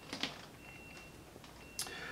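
Faint clicks of a small 3D-printed plastic part being handled, a few near the start and one near the end.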